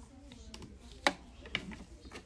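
A sharp click about a second in, followed by a softer click about half a second later, over faint room sound.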